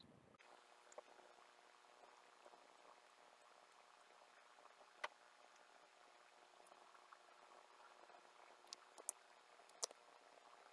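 Near silence with faint room hiss, broken by a few small clicks and taps, once about a second in, once midway and three near the end, as nail polish bottles and brushes are handled over a jelly stamper.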